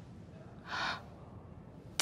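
A person's short, sharp intake of breath, a gasp, a little under a second in, over a faint low room hum.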